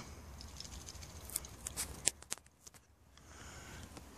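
Quiet background with a short run of faint clicks and ticks in the middle.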